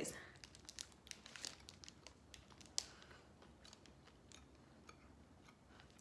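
Faint crinkling of a foil snack-bar wrapper in the hands and quiet chewing of a soft oat fiber bar: a scatter of small clicks over the first few seconds, thinning out after.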